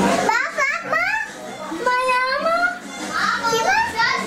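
Young children's high-pitched voices, calling out and squealing with pitch sliding up and down.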